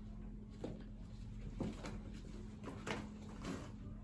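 Steady low room hum with about five soft, short knocks and shuffles spread through, the kind made by people stepping and moving close to the microphone.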